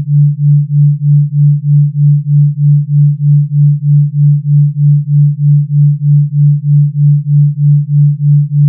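Pure sine-tone binaural beat: one low steady tone whose loudness pulses evenly about three times a second, the 3.2 Hz delta beat between two slightly detuned tones.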